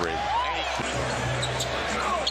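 Live basketball game sound from the arena: steady crowd noise, a single rising-and-falling sneaker squeak on the hardwood near the start, and short knocks of the ball bouncing. A low steady tone of arena music comes in for under a second about a second in.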